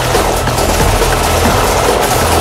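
Hard techno track playing loud and steady, with a heavy, droning bass under a dense synth texture.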